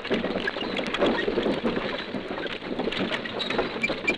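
Artillery caissons on the march: a continuous, irregular rattle and clatter of rolling wheels and gear. It is heard through the narrow, crackly sound of an old 78 rpm sound-effects disc.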